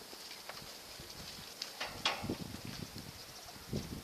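Cattle hooves thudding and shuffling on the loose dirt of a stock pen, with a few sharper knocks about two seconds in and irregular low thuds after.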